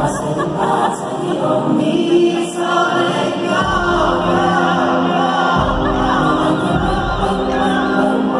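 Live arena concert music from among the audience: layered, choir-like vocals held over sustained chords. A deep bass comes in a little before the middle and drops out again near the end.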